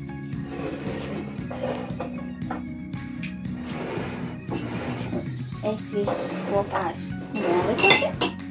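A metal spoon clinking lightly against a drinking glass several times as liquid is stirred, over steady background music.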